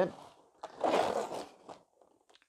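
A sheet of stiff coloured card being handled and slid on a tabletop: one brief scrape lasting about a second, with a faint tap just after it.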